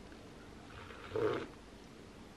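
A person sipping hot chocolate from a ceramic mug: one short, soft mouth sound about a second in, over quiet room tone.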